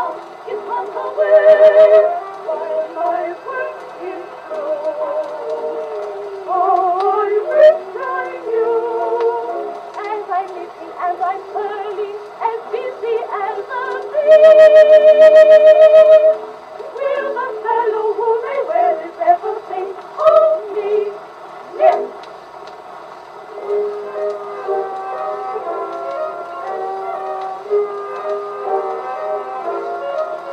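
An Edison Diamond Disc playing on an Edison A-80 acoustic phonograph: music from a 1917 acoustic recording of a Broadway song for a soprano trio, thin-sounding with no deep bass or high treble. About halfway through, a long held note with a wavering vibrato is the loudest part.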